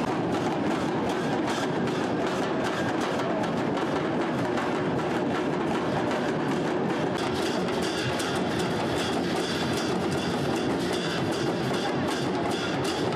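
Several large drums with white skins beaten in a fast, unbroken rhythm.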